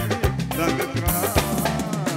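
Live band music with the drum kit to the fore, steady drum strikes under a melody, and a cymbal crash about a second in.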